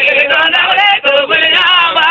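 Christian praise song: singing over music, the sung melody wavering and sliding in pitch, with a brief break about a second in.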